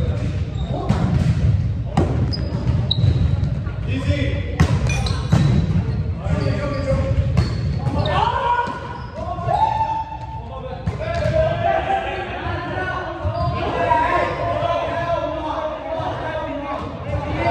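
A volleyball being hit and bouncing on the hardwood gym floor, with several sharp slaps in the first half that ring in the big hall. Players' voices calling and talking take over from about halfway through.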